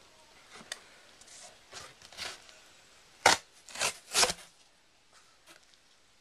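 A sheet of brown cardboard being bitten and torn off with the teeth: a few soft crackles, then three louder rips in quick succession a little past halfway.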